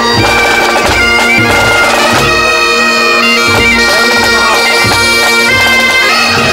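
Several bagpipes playing a marching tune over a steady drone, the melody stepping between notes above it.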